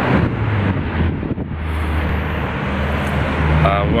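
Road traffic going by on a multi-lane road: a steady low hum of passing vehicle engines and tyres.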